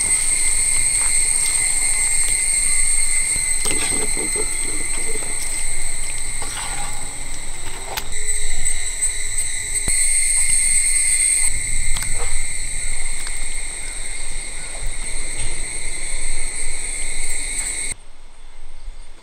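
Insects trilling steadily, a continuous high-pitched buzz, with a few scattered clicks and knocks.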